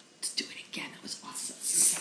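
A woman whispering softly, with breathy, voiceless speech sounds between louder spoken chant lines.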